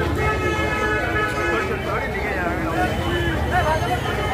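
A horn sounds one steady toot lasting about a second and a half near the start, over the chatter of a dense street crowd, with a short rising-and-falling tone a little later.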